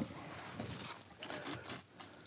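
Hand chisel shaving down a red spruce guitar brace: a few faint, short scraping strokes of the blade through the wood.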